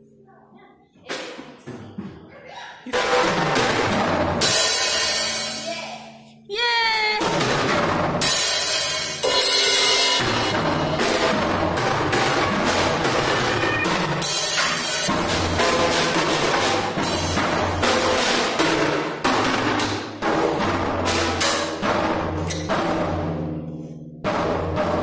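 A drum kit played by a child, with snare, toms and cymbals struck in a busy pattern and a keyboard sounding along. It starts quietly, gets loud about three seconds in, and breaks off briefly near six seconds before carrying on.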